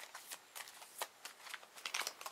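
A deck of homemade cards in clear plastic sleeves being shuffled by hand, giving a quiet, irregular series of soft clicks and slaps as the sleeved cards slide and hit one another.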